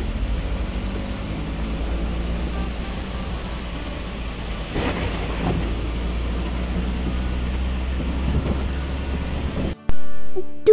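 Steady road noise heard from inside a moving car on a wet road: a low rumble with a hiss over it from the tyres, cutting off suddenly near the end.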